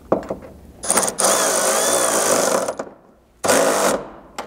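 Milwaukee cordless electric ratchet driving a rock-slider mounting bolt tight. A few light clicks come first, then the motor runs for about two seconds with a wavering whine, and gives a second short burst near the end.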